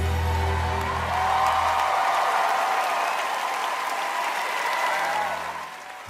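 Studio audience applauding and cheering at the end of a dance, over the music's last held chord, which dies away about two seconds in.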